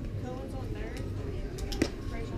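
A single sharp pop of a baseball smacking into a catcher's mitt near the end, over a steady murmur of spectators' voices.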